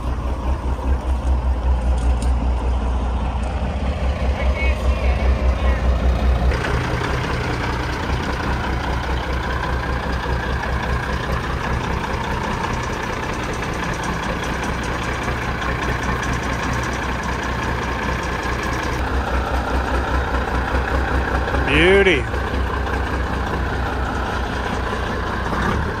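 A 1500-wheel-horsepower diesel semi truck's engine running at low revs with a steady low pulse as the truck creeps forward slowly. There is a brief rising-and-falling squeal near the end.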